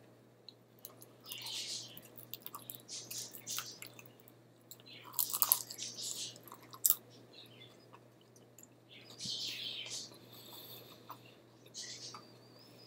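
A person chewing a mouthful of pierogi close to the microphone: wet mouth sounds in irregular bursts, loudest about five seconds in, with a single sharp click near seven seconds.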